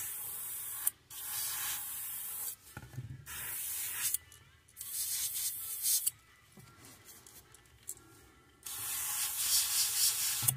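Airbrush spraying paint in about five short bursts of hissing air, broken by pauses, with a few light knocks in between.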